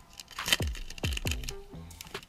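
Plastic cello-pack wrapper crackling as it is peeled back off a stack of trading cards, over music with two deep bass hits that drop in pitch, about half a second apart.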